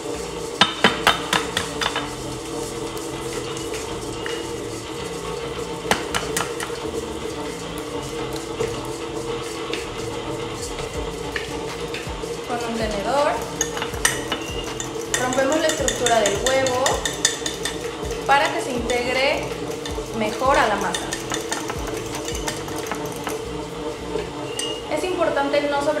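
Electric stand mixer running steadily at medium speed, beating butter and sugar in a stainless bowl. Over it, eggs are cracked against a glass bowl with a few sharp taps near the start, then beaten with a fork that clinks against the glass.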